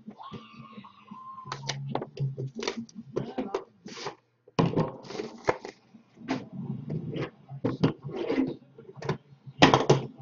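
Hands handling and setting down trading card boxes on a desk: an irregular string of clicks, taps and knocks, the loudest knock just before the end.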